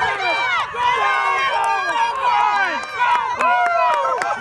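Several voices shouting and cheering at once, many of them high-pitched, with no break: excited spectators and players yelling on a runner breaking away downfield.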